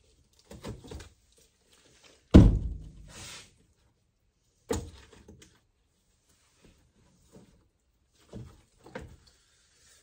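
Knocks and thunks from a cooler being opened and shut: the loudest thunk about two and a half seconds in, a second sharp one near five seconds, and a few lighter knocks around them.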